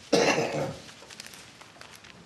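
A man coughs once, a sudden loud cough just after the start that dies away within about half a second.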